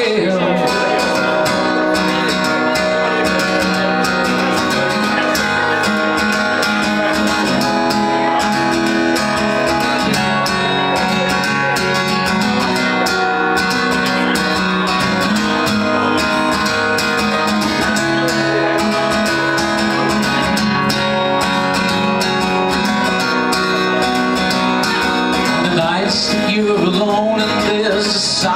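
Acoustic guitar strummed steadily through an instrumental passage between verses of a live folk-rock song, heard through the venue's PA.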